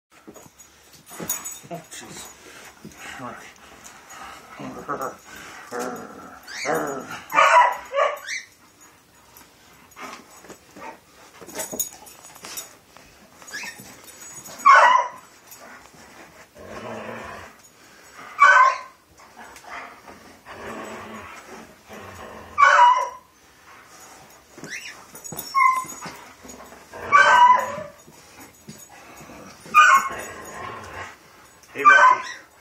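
A large dog barking in short bursts every few seconds while playing tug-of-war with a stick, with some whimpering between barks.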